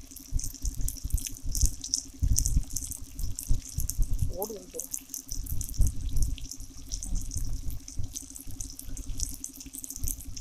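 Chicken pieces frying in oil in an iron kadai over a wood fire: a steady sizzle with a constant spray of small crackles. Irregular low rumbles run under it, and a short gliding tone sounds about halfway through.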